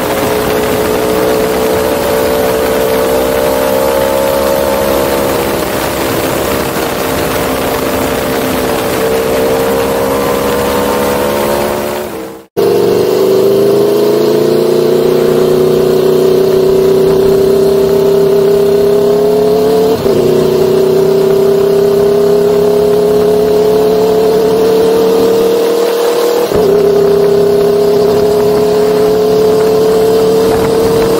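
Aprilia sport motorcycle engine running at road speed, its note held steady and then slowly climbing, with two brief dips in pitch in the second half. The sound cuts out for a moment about twelve seconds in.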